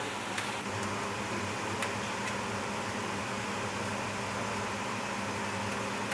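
Steady mechanical hum and hiss of kitchen equipment, with a few light clicks of a metal skimmer against a large aluminium cooking pot in the first couple of seconds.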